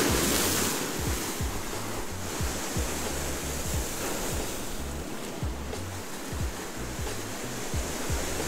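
Surf breaking and washing over the rocks of a jetty, loudest with a wave crash at the start. Background music with a steady bass beat, about two and a half beats a second, runs underneath.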